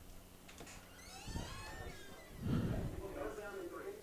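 Faint, distant speech: a voice carrying across the stadium, heard at low level over a low steady hum that stops a little over a second in.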